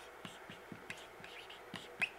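Dry-erase marker writing on a whiteboard: a series of short, faint strokes and squeaks as a word is written out.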